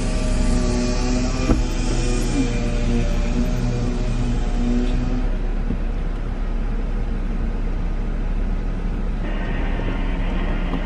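A car engine idling, heard from inside the cabin as a steady low rumble. A faint steady hum of several tones sits over it for about the first five seconds, then fades.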